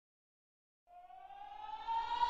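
Faint electronic tone, rich in overtones, fading in about a second in and sliding slowly upward in pitch like a siren: the rising opening of the backing pop track.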